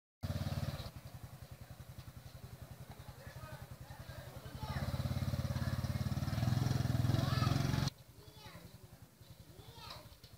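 Small motorcycle engine idling with a steady low pulse, growing louder about halfway through, then stopping abruptly near the end; faint voices follow.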